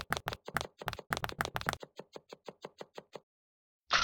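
A rapid series of light, sharp clicks, about eight a second at first, then slowing and thinning out before stopping about three seconds in.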